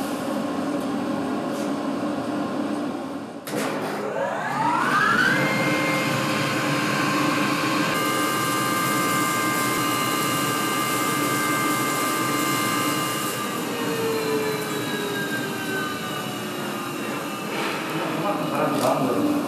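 Electric rice mill grinding rice into flour: a steady machine whine. About three and a half seconds in, its pitch rises over a couple of seconds as the motor spins up, then holds steady, sagging slightly lower near the end.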